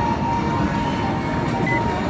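Arcade din: a steady low rumble of machines, with a held electronic tone from a game that fades out near the end.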